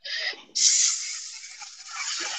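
A man making a long hissing 'shhh' with his mouth in imitation of a running tap. It starts about half a second in and slowly fades.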